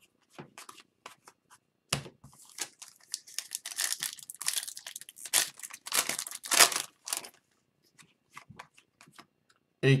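A foil-wrapped trading-card pack being torn open, the wrapper crackling and crinkling in quick bursts for about five seconds from two seconds in. Sparse soft ticks of cards being handled come before and after.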